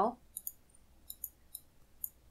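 Several faint computer mouse clicks, some in quick pairs.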